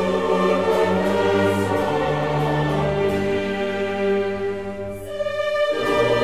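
A choir and a baroque orchestra sing and play a slow passage of long held chords. The sound thins briefly about five seconds in before a new full chord comes in.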